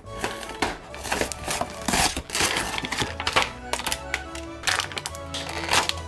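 Plastic blister packaging and cardboard crinkling, crackling and clicking as a toy box is torn open by hand, over background music.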